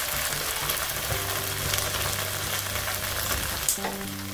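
Chilli chicken with onion and capsicum sizzling steadily in a wok over a gas flame.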